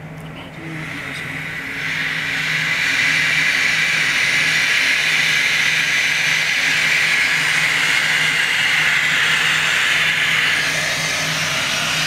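Helium gas hissing steadily from a fill hose into a latex weather balloon as it inflates. The hiss comes up over the first couple of seconds, then holds even.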